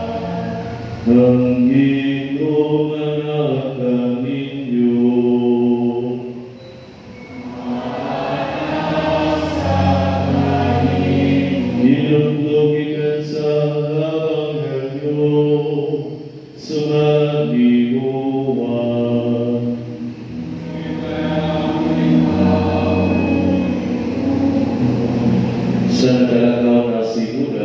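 Church choir singing during Mass in slow, long-held notes, with two brief breaks between phrases about 7 and 16 seconds in.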